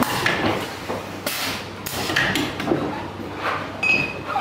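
Champagne bottling and labelling line running: glass bottles knocking and clinking together as they move through the labeller and around the rotary table, with steady machine clatter. A short hiss a little over a second in, and a brief ringing clink near the end.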